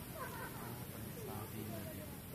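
Long-tailed macaque calling: a few short, high calls that slide down and up in pitch, one after another, over a steady low rumble.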